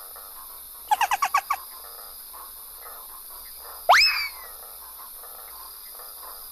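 Animal-like calls: a quick run of about seven short, pitched chirps about a second in, then a single call near four seconds that sweeps sharply up in pitch and trails off downward.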